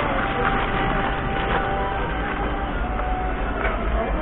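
Steady background din of a busy market with a deep, constant rumble underneath and no single sound standing out.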